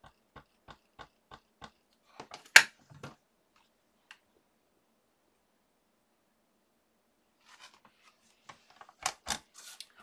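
An ink pad tapped lightly and repeatedly onto a rubber stamp held in a stamping platform, about three taps a second, then the platform's hinged clear lid closing with a sharp clack about two and a half seconds in. Near the end, rustling and two sharp clicks as the lid is opened again.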